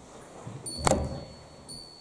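A single sharp clink a little under a second in, with a thin, high ringing tone, from metal struck at the altar.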